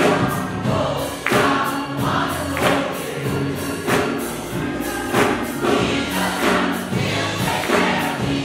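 Gospel choir singing with keyboard accompaniment and a regular percussive beat.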